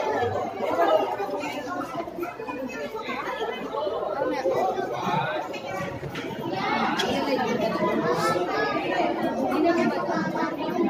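Many people talking at once: indistinct, overlapping chatter of a crowd of visitors, with no single voice standing out.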